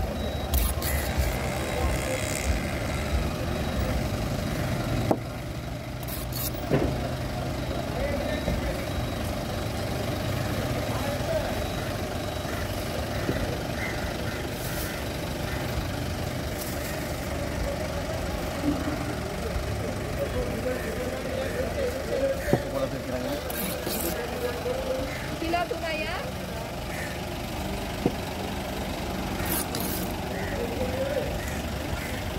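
Heavy knife chopping tuna on a wooden board, a few sharp knocks spread through, over a steady hum of street traffic and background voices.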